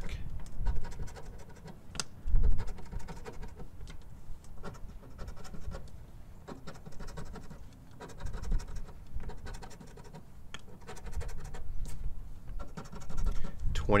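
A coin scraping the scratch-off coating off a lottery ticket in short, irregular strokes, with a louder scrape about two seconds in.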